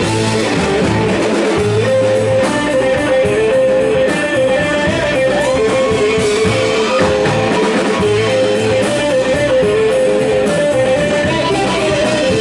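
A rock band playing live in an instrumental passage with no vocals: electric guitar and mandolin play a repeating melodic line over upright bass and drums.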